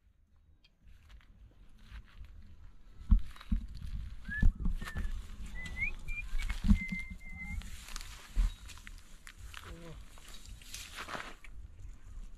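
Footsteps and rustling through dry grass and loose stones, with a low rumble of wind on the microphone. A few short high whistled notes come between about four and seven seconds in.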